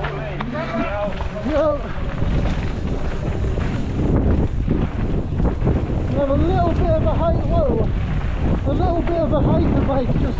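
Wind buffeting a helmet-mounted camera microphone at speed during a mountain-bike descent, with the steady rumble of tyres on a rough dirt trail. Untranscribed voice sounds come through near the start and again in the second half.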